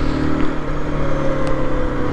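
Aprilia RS 125's single-cylinder four-stroke engine running at light cruising revs, its note drifting slowly lower, over steady wind and road noise.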